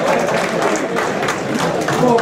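Audience clapping and shouting, a din of claps and voices.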